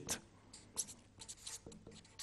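Marker pen writing a short word, a series of faint, brief strokes.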